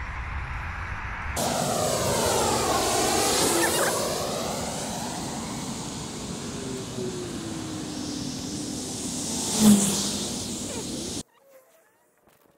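Loud rushing noise of a passing vehicle, its pitch sweeping as it goes by, with a slowly falling tone; a short loud thump comes near the end, and the sound cuts off abruptly about eleven seconds in.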